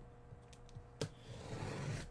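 Folding knife slicing through the packing tape along the seam of a cardboard shipping case: a sharp click about a second in as the blade catches, then a soft, growing sound of the cut running along the tape.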